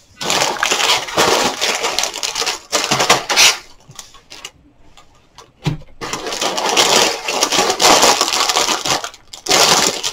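Plastic bags of LEGO pieces crinkling, with the bricks inside rattling and clinking as they are handled. The crinkling pauses for a moment midway, broken by a single knock on the table, then starts again.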